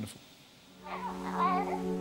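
A moment of quiet, then soft background music fades in with a held low chord, and a high wavering voice-like sound rises over it for about a second.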